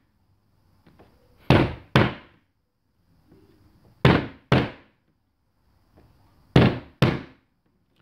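Hand claps in three quick pairs, the two claps of each pair about half a second apart and a couple of seconds between pairs: double claps meant to trigger a clap-switch circuit, which needs two claps to switch its LED on.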